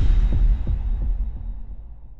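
Logo-intro sound effect: a deep bass boom right after a rising sweep, followed by a few low throbbing pulses that die away.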